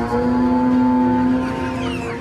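A cow mooing: one long call of about a second and a half that fades out.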